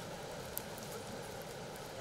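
Steady, even rush of a small creek's running water, with a single short click about half a second in.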